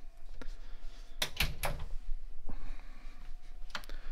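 A wooden medicine cabinet door being shut: a cluster of knocks and clicks a little over a second in, then a single knock and a pair of lighter clicks near the end.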